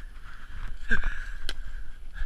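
Handling noise of a GoPro rubbing and knocking against clothing as the man moves on a snowy slope, with a steady low rumble. The loudest moment comes about a second in, a cluster of knocks with a short falling voice sound, then a sharp click.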